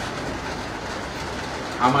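Steady background noise of a room in a pause in a man's speech; his voice comes back near the end.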